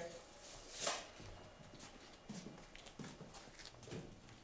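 Faint, irregular footsteps on a concrete garage floor, with a brief swish about a second in.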